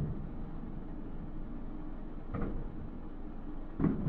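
Fireworks shells bursting in the distance: two booms, one a little past halfway and a louder one near the end, over a steady low rumble.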